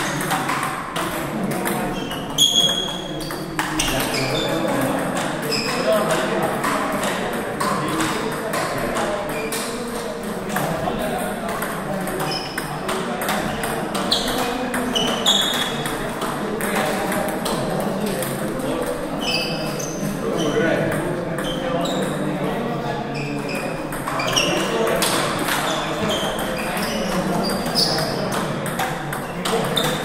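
Table tennis balls clicking off rubber paddles and the table in rallies, a hit every second or so, with a steady murmur of voices from other players behind.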